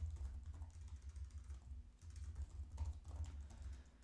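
Typing on a computer keyboard: faint, irregular keystrokes over a low steady hum.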